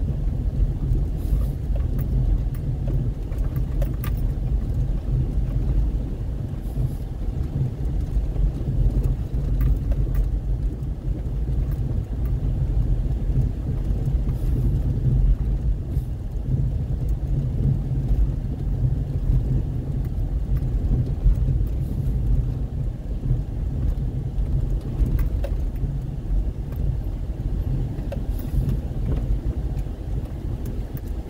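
Steady low rumble of a car driving over an unpaved, rutted dirt road, heard from inside the cabin, with a few faint clicks or rattles.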